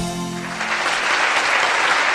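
Audience applauding, swelling in about half a second in as the last of the intro music fades away.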